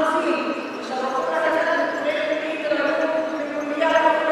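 Only speech: a woman talking into a microphone.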